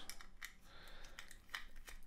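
Faint light clicks and scraping of a small screwdriver turning screws out of a plastic radio-module case.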